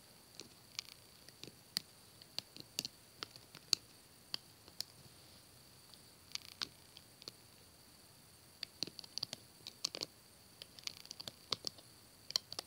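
Small, irregular clicks and snaps of rubber bands being hooked off the pegs of a plastic Alpha Loom, coming thicker near the end, over a faint steady high-pitched background whine.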